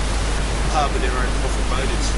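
Steady noisy hiss with a constant low rumble, and a man's voice faint underneath it.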